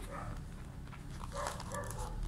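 Two short, faint whines from an animal, near the start and about one and a half seconds in, over a steady electrical hum.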